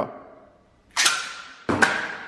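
A spring-loaded telescopic metal stick flicked open and shooting out to full length: a sharp swish and clack about a second in, then another shortly before the end, each trailing off with a faint metallic ring.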